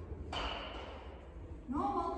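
A short, sudden sound about a third of a second in that fades away over about a second, then a woman's voice calling out near the end.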